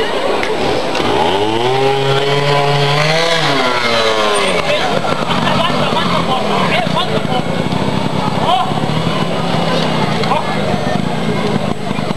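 Trials motorcycle engine revving up about a second in, holding high for about two seconds and dropping back. Shorter, quieter bursts of throttle follow as the bike works up a steep slope, with crowd voices throughout.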